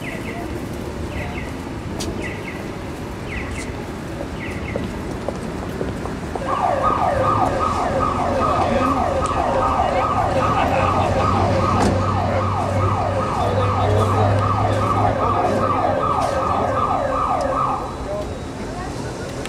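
Electronic siren sounding a quickly repeated falling tone, about three sweeps a second. It starts about six and a half seconds in over street traffic noise and cuts off sharply near the end.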